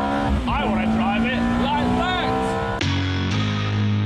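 Ferrari F430 Spider's 4.3-litre V8 engine being driven hard, with wavering tyre squeal. About three seconds in, the electric-guitar theme music cuts in abruptly.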